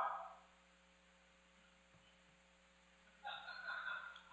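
Near silence in a hall, with a faint steady electrical hum, then near the end a faint, distant voice, as of an audience member answering a question off-microphone.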